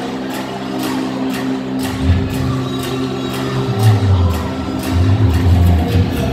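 Arena PA system playing intro music: sustained synth-like chords over an even beat of about two strokes a second, with a heavy bass line coming in about two seconds in and growing louder toward the end.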